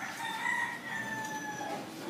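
A rooster crowing once, a single call of nearly two seconds that drops slightly in pitch in its second half.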